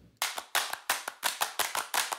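Rhythmic hand claps, several a second, starting suddenly just after the start: the percussion opening of the closing theme song.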